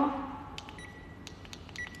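A faint, steady, high electronic beep tone that swells briefly near the end, with a few light clicks, heard after the tail of a woman's voice.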